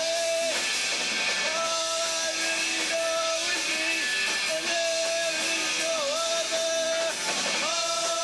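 Punk rock band playing live on electric guitars, bass and drum kit, with long held notes that bend down briefly about six seconds in.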